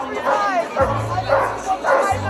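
A crowd of protesters shouting, with several short, loud yells over one another.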